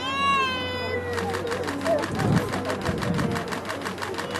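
A high-pitched squealing call in the first second. Then a rapid, even clicking, about seven clicks a second, over faint murmuring voices.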